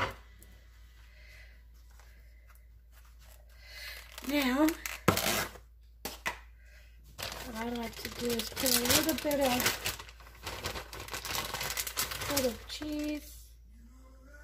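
A plastic bag of shredded cheese being handled and opened, crinkling most steadily from about seven to twelve seconds in, with a couple of sharp knocks earlier on.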